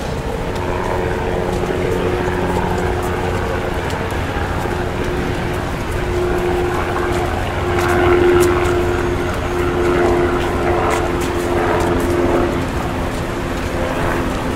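Busy city street ambience: traffic noise with a steady, engine-like hum underneath. It gets a little busier and louder in the middle, with a few faint clicks.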